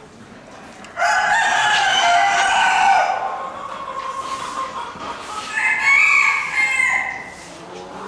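Two loud rooster crows: the first starts suddenly about a second in and lasts about two seconds, and a second, higher-pitched crow follows a few seconds later.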